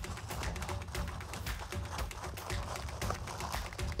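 Aluminium foil crinkling as hands press and fold its rim into a bowl shape, a run of irregular small crackles. Background music with a steady beat plays underneath.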